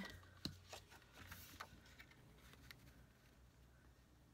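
Faint handling of cardstock on a craft desk: a few light taps and rustles of card being moved and laid down, most of them in the first two seconds.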